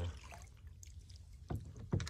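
Two short, dull knocks on a plastic kayak hull, about a second and a half in and again just before the end, the second louder, over a low rumble of water and boat noise.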